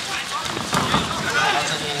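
Spectators' voices talking under a steady hiss of falling rain.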